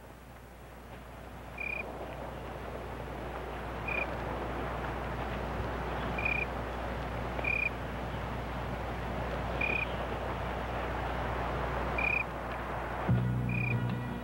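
Night-time outdoor ambience: a steady hiss that swells in, with a small animal's short, high chirp repeating every one to two seconds. Low, steady music comes in about a second before the end.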